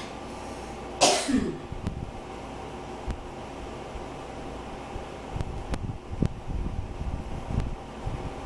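A person coughs once, loudly and briefly, about a second in. A steady fan hum runs underneath, with a few faint clicks and low bumps later on.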